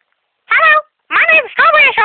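A person's high, squeaky put-on voice making three short cries that slide down in pitch, about half a second apart, with no clear words.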